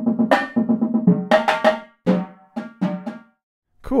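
Virtual Drumline sampled marching drumline playing back from notation: snare line, tenor drums and bass drums in a steady rhythm at 120 beats a minute. The tenors start on soft puffy mallets, then switch to regular hard mallets about a second in, with brighter attacks. The playback stops a little after three seconds in.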